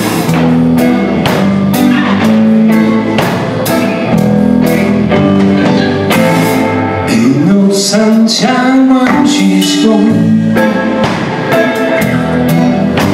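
A live blues band plays electric guitars, bass guitar and drum kit at a steady beat. About seven seconds in, the bass and low end drop back for a few seconds while a guitar plays bending notes, then the full band returns.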